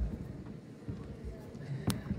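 Hall room noise with a faint murmur of voices, a few soft low thumps, and one sharp click near the end.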